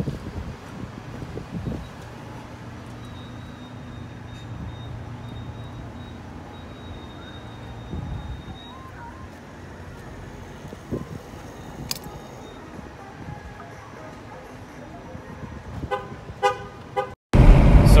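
Gas pump filling a car's tank through the nozzle: a steady low hum with a faint high whine and a few clicks. Near the end come a short run of quick horn-like toots, then speech.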